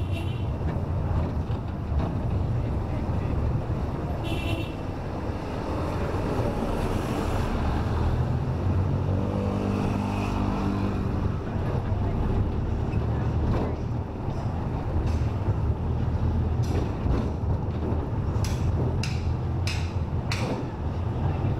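Steady low engine rumble and road noise of a vehicle driving through street traffic. About ten seconds in a pitched engine note comes and goes briefly, and a few sharp knocks come near the end.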